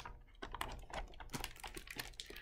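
A large hardcover picture book being closed and handled: a run of irregular light clicks and rustles of paper and cover, starting about half a second in.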